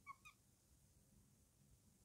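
A felt-tip marker squeaking faintly twice on a whiteboard as a number is written, right at the start, then near silence.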